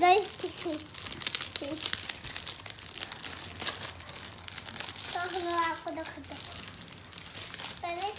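Clear plastic bag crinkling as it is handled and pulled at, a dense run of crackles, loudest in the first couple of seconds. A child's voice breaks in briefly about five seconds in.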